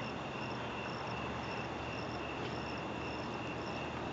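Crickets chirping: a steady high trill with a higher chirp repeating about twice a second, over a low background hiss.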